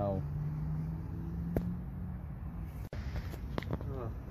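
A man's voice making a long, low wordless hum, with a sharp click about one and a half seconds in; the audio cuts out for an instant near three seconds, and voice sounds return near the end.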